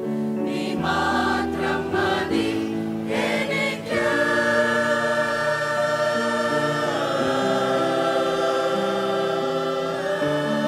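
Mixed choir of men and women singing a sacred song with piano accompaniment. The voices move through several notes, then settle into long held chords from about four seconds in.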